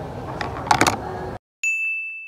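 Café background noise with a few sharp knocks, then a cut to silence and a single bright chime ding, one steady high tone that fades away.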